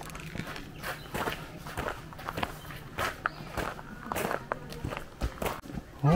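Footsteps on a gravel path and stone steps: an irregular series of short steps, about two or three a second.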